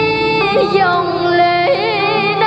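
A slow sung melody: a voice holding long notes with vibrato and sliding ornaments, stepping to new pitches about half a second in and again near the end, over a steady low instrumental backing.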